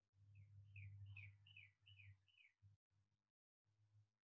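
Faint bird song: a run of six short notes, each sliding downward, about two and a half a second, over a low hum.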